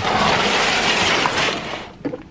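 Fabric bag rustling as it is grabbed and moved right against the microphone: a loud, steady scraping rustle for nearly two seconds that fades out near the end.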